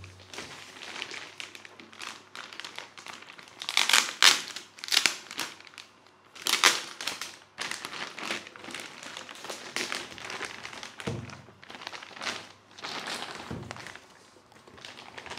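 Thin clear plastic bag crinkling and rustling as it is worked off a small NAS enclosure, in irregular bursts that are loudest about four and seven seconds in. A couple of dull thunks come near the end as the unit is handled.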